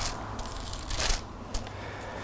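Pages of a Bible being turned by hand: a few short papery rustles, the loudest about a second in, over a low room hum.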